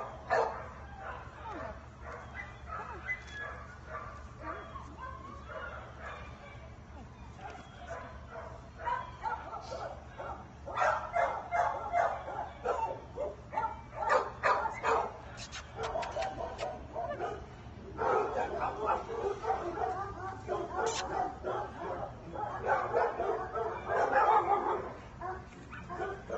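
A dog vocalising off and on, its sounds louder and more continuous from about ten seconds in and again over the last several seconds, as it lies down and refuses to walk.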